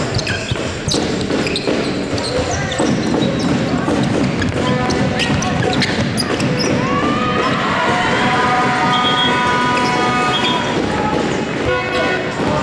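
A basketball bouncing on a wooden sports-hall court, with sharp knocks and thuds of play over a steady bed of background music and voices.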